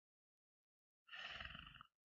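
Near silence, then about a second in a brief, low, guttural grunt from a man, under a second long.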